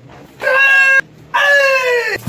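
A karate practitioner's kiai shouts: two drawn-out, high-pitched yells of about half a second each, the first cut off sharply.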